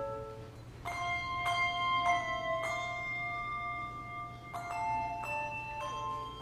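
Handbell choir playing: chords of handbells struck and left ringing, the notes overlapping as they fade. One chord dies away at the start, and after a short lull new chords come in from about a second in, roughly one every half second to second.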